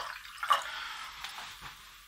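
Water dribbling and dripping from a plastic jug into a plastic cup as the pour tails off, with a sharp tick about half a second in and a few fainter ticks after.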